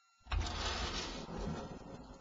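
Car parts in a chain-reaction rig set moving: a sudden rumbling, hissing run that starts a moment in, is strongest for about a second, then fades.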